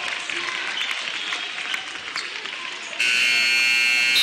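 Crowd noise in a gym, then about three seconds in a scoreboard buzzer starts suddenly, loud and steady, marking the end of the first quarter.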